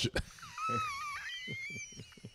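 A person laughing in a high, thin, wavering squeal that rises and falls in pitch for about a second and a half.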